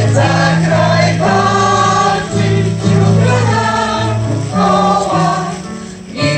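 Amateur senior choir, mostly women's voices, singing a Polish soldiers' song to electronic keyboard accompaniment, with steady held bass notes under the voices.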